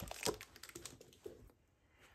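A few soft clicks and paper rustles from a spiral-bound planner being closed and slid away across a desk, dying out to near silence about a second and a half in.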